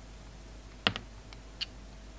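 Snap-off utility knife blade cutting into a carved soap flower, giving a few short crisp clicks: the loudest just under a second in with a second one right after, then two fainter ones.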